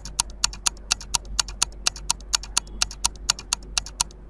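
Quiz countdown-timer sound effect ticking evenly, about four ticks a second, stopping shortly before the end.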